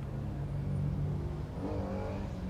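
Urban road traffic: car and van engines running steadily, with one engine revving up as it accelerates near the end.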